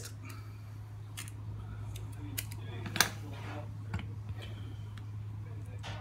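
A small hand zester cutting a strip of peel from a lemon: quiet scraping and a few small clicks, the sharpest about three seconds in, over a steady low hum.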